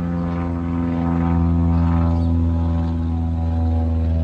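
An airplane flying past, its engine a steady drone of several low, even tones that swells to its loudest about a second and a half in and stays loud.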